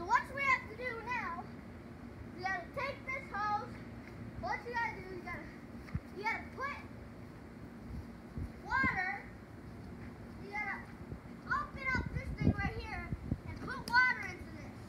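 A child's high-pitched voice calling out and chattering in short bursts throughout, with a faint steady hum beneath.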